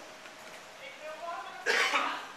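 Faint voices, then near the end one short, loud cough.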